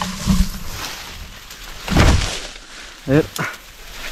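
Leaves and branches rustling as someone pushes through dense undergrowth, with a low thump near the start and one loud puff of noise about two seconds in.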